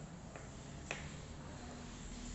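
Wooden matchsticks being handled and set down on paper: a faint click, then one sharp click about a second in, over a steady background hiss.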